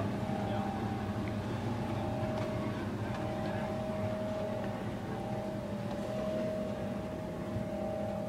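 Steady machine hum inside an aircraft cabin, with two constant whining tones over a low drone and no change in pitch.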